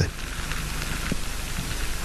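Steady hissing wash of water noise heard underwater.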